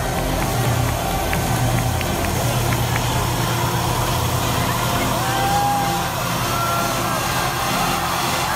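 Loud crowd noise in a large concert hall during a lull in the DJ set: a dense hubbub of voices and cheering over a low bass hum that thins out about two and a half seconds in, with a few short whoops in the second half.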